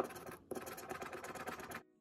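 A round scratcher disc scraping the coating off a scratch-off lottery ticket, in two stretches with a brief pause about half a second in, stopping shortly before the end.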